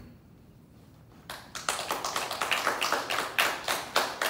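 A small audience applauding at the end of a song: after about a second of near quiet the clapping starts and goes on as a run of separate, irregular claps.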